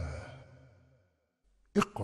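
The echoing tail of a man's recited narration fades out over about a second, then near silence. A single sharp knock comes near the end.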